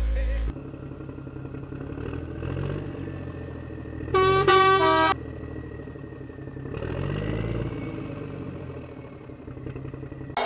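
Truck engine running and revving up and down, with one horn honk lasting about a second, about four seconds in.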